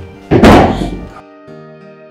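A single loud thunk about half a second in, its low boom dying away about a second in, over soft background music.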